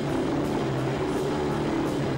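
A stoner rock band playing live: loud electric guitars and bass hold low, droning chords over drums, with regular cymbal strokes.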